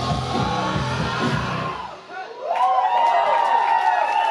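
Live rock band playing loud, then the music stops abruptly about two seconds in. A moment later the audience cheers, with high whoops and shouts.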